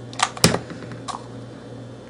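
Light handling of a plastic cup and hot glue gun on a stainless-steel worktable: three short clicks and taps, the loudest about half a second in, over a low steady hum.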